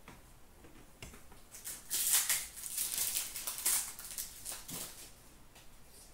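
Trading cards being handled and flipped through by hand: a run of short rustles and snaps of card stock that starts about a second in and is loudest around two seconds and again around three and a half seconds.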